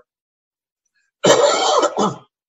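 A man coughs into his hand about a second in, after a moment of dead silence on the call line. The cough lasts about a second.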